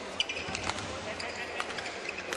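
Badminton rally: sharp racket hits on the shuttlecock, the loudest just after the start, with shoes squeaking on the court over background crowd chatter.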